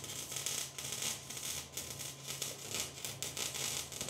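MIG welding arc crackling steadily as a bead is laid on steel, a dense run of fast sputtering clicks over a steady low hum.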